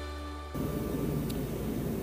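Background music ends abruptly about half a second in, giving way to the steady low growl of a space heater running in a metal hangar.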